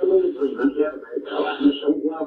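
Choppy, unintelligible fragments of speech from a ghost-box app on a phone, sweeping radio audio in search of spirit voices.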